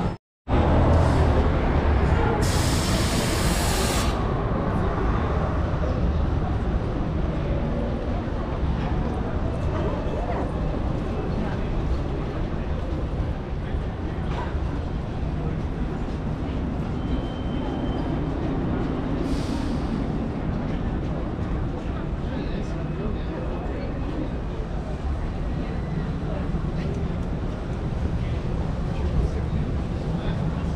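Busy downtown street ambience: a steady rumble of traffic and buses with passers-by talking indistinctly. After a split-second dropout at the start, a loud hiss lasts about a second and a half, with a shorter, fainter one later.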